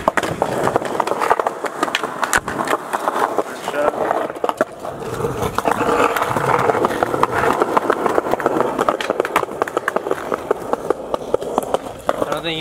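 Skateboard wheels rolling over a concrete sidewalk, with sharp clacks and knocks from the wheels crossing the slab joints and from the board hitting the ground on flat-ground trick attempts. The rolling grows louder about halfway through.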